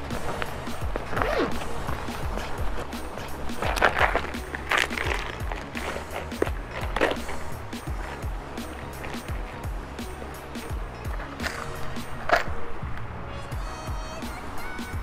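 Background music playing under handling noises: a canvas pack rustling and a clear plastic tackle box being handled, with several sharp rustles and clicks.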